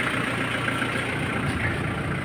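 Isuzu Bighorn's 4JG2 four-cylinder diesel engine idling steadily.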